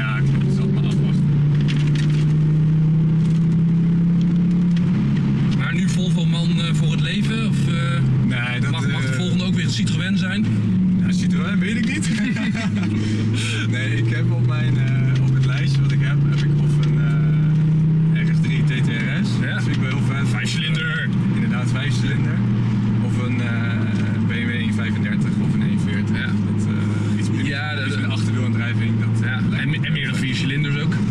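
Volvo C30 T5's turbocharged five-cylinder petrol engine heard from inside the cabin under acceleration. Its note climbs steadily, falls back about five seconds in as if on an upshift, then climbs and falls back again around eighteen seconds in, and settles to a steadier cruise.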